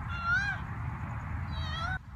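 A cat meowing twice, two short rising calls about a second and a half apart, over a steady low background rumble.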